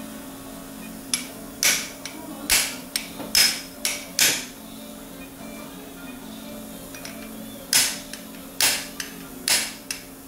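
Surgical mallet striking a metal impactor, driving the uncemented, press-fit plasma-coated component of a reverse shoulder prosthesis into the humerus. Sharp metallic blows come in two runs: about seven strikes in the first half, then a pause, then four more near the end.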